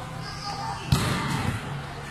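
A volleyball strikes once with a sharp smack about a second in, with a short echo, against children's voices.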